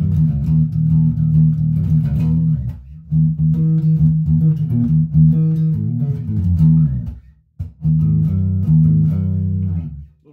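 1978 Gibson Grabber electric bass played with its tone control rolled back: a riff of low plucked notes, broken by two short pauses about three seconds and seven and a half seconds in, stopping at the end.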